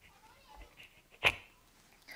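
A quiet pause, broken once, about a second in, by a single short, sharp noise picked up close to a handheld microphone.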